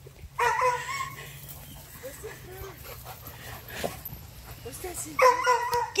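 A husky-type dog whining in two drawn-out, high-pitched cries, one about half a second in and one near the end, with soft whimpers between.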